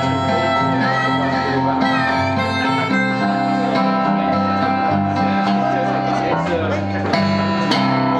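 Live electric bass guitar and acoustic guitar playing an instrumental passage of a song, with the bass moving between held notes about once a second.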